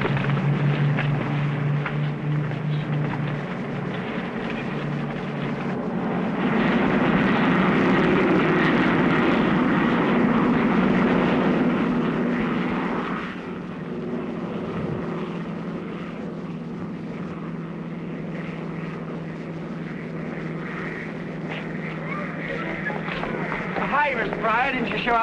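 Propeller airliner engines droning. The sound swells louder for several seconds around the middle, then drops to a lower steady hum.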